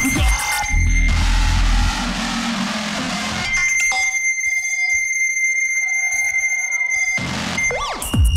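Electronic-style beatbox music built live on a Boss loopstation. A heavy bass and a dense beat play for the first few seconds. Then the bass drops out into a sparse breakdown with a steady high tone, and the full beat comes back right at the end.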